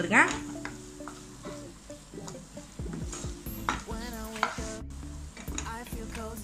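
Wooden spatula stirring and scraping scrambled egg masala around a nonstick frying pan, with the egg and masala sizzling as they fry.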